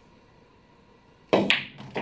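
Pool cue tip striking the cue ball about a second in, followed a moment later by the sharp clack of the cue ball hitting an object ball, with a further knock near the end as the balls hit the cushion or pocket.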